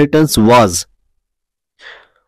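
Speech for about the first second, then a pause of silence, then a short, faint breath near the end.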